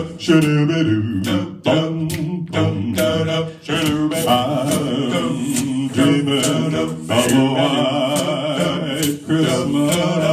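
Five-voice male a cappella group singing wordless close-harmony chords into microphones, with sharp vocal-percussion beats keeping time over the first few seconds, then long held chords.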